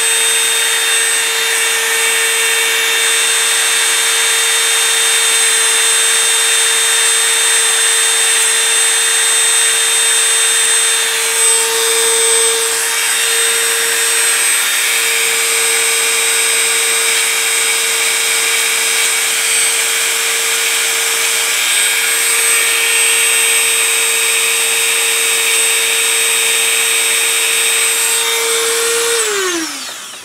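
Handheld rotary tool with a small polishing wheel running at a steady high speed, a constant whine, as it polishes a steel rifle bolt extractor that has been hanging up. It is switched off near the end and winds down.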